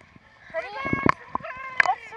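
Pool water splashing and lapping close by, with sharp slaps, and high-pitched human voices calling or talking without clear words.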